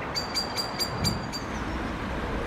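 A bird's rapid run of about six short, high chirps in the first second and a half, over a steady rumbling background like distant traffic.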